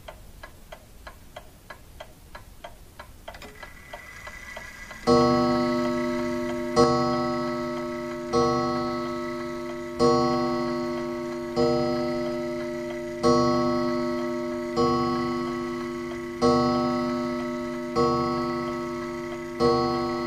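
Faint ticking like a clock, a few ticks a second. About five seconds in, a loud sustained music chord comes in and is struck again about every second and a half, fading after each strike.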